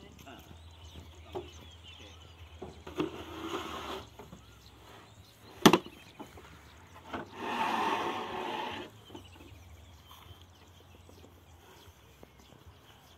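Corrugated fibre-cement roof sheets being handled: one sharp knock about halfway, the loudest sound, with two spells of scraping and shuffling before and after it and a few light clicks.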